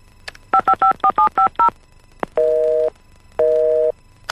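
Touch-tone telephone keypad dialed, seven quick two-tone beeps, followed by a busy signal: two half-second beeps half a second apart, meaning the number dialed is engaged.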